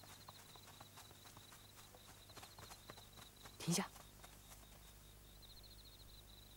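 Night ambience of crickets chirping steadily, with faint scattered footstep-like clicks and one short, loud vocal sound a little past halfway.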